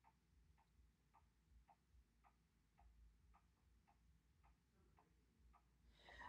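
Near silence with faint, evenly spaced ticking, a little under two ticks a second.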